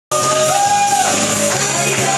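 Karaoke: loud backing music with a voice singing over it in long held notes.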